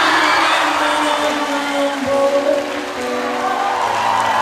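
Live pop-rock band playing a song with vocals over electric bass, electric guitar, keyboards and drums, amplified through a PA.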